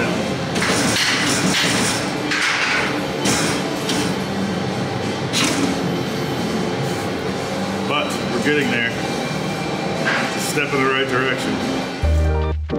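Steel roll-cage tube scraping and sliding against the cage tubing in a tight, rough fit as it is worked in and pulled back out, in several rasping strokes over the first half. Background music plays underneath, with brief muttered speech later on.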